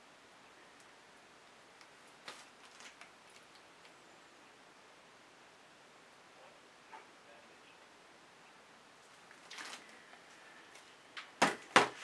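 Quiet room tone with a few faint handling clicks while a plastic paint bottle is squeezed over the canvas, then two sharp knocks close together near the end.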